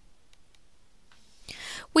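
Near-quiet pause with a couple of faint computer mouse clicks early on, then a breath drawn in about a second and a half in, just before a woman starts speaking.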